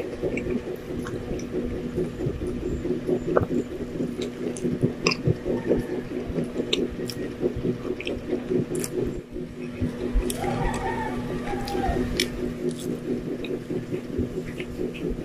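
Close-miked chewing of a soft white-bread sandwich: wet mouth sounds with many small scattered clicks, over a steady low droning tone.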